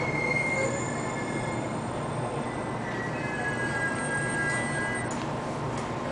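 A JR Kyushu 813-series electric train rolling slowly into a station under braking: a steady running rumble with thin, high squeals from the wheels on the rails.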